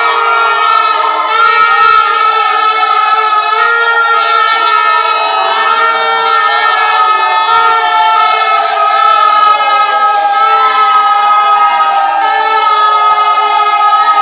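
Many plastic toy trumpets (pungis) blown together by a crowd: a dense, unbroken mass of held honking tones at several pitches overlapping, with one tone sliding down in pitch a little past the middle.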